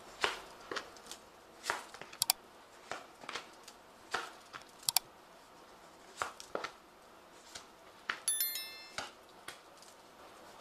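A tarot deck being shuffled and handled: irregular soft riffles and taps of the cards, with a few sharp clicks and a brief high ringing clink about eight seconds in.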